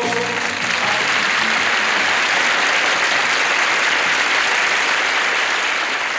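Audience applauding steadily at the end of a song, with the last sung choral chord dying away just after the start.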